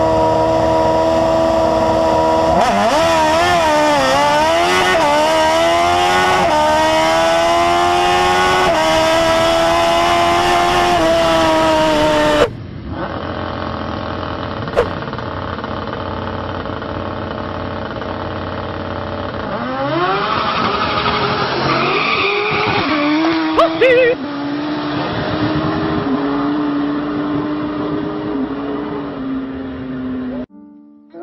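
Hayabusa motorcycle engine in a drag golf cart running at high revs, then accelerating, its pitch climbing with several brief dips, until a sudden cut. A car on a street drag race follows: engine running, then revving up with tyre noise about two-thirds of the way through, settling to a steady engine note.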